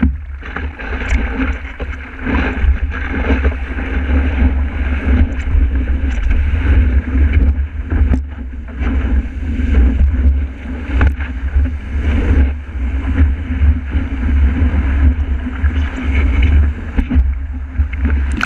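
Rushing water of a breaking wave and whitewater around a stand-up paddleboard, heard through a board-mounted camera with heavy wind buffeting on its microphone and scattered sharp splashes.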